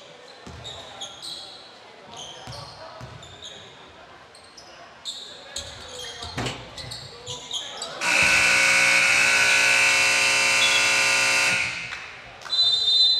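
Gym scoreboard buzzer sounding one long, loud, steady blast of about four seconds, starting about eight seconds in. Before it, sneakers squeak and a basketball bounces on the hardwood court.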